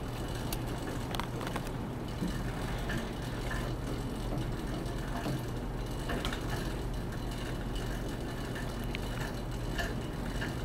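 Monark cycle ergometer being pedalled lightly with the resistance taken off for cool-down: a steady low hum of the flywheel and chain, with faint scattered ticks.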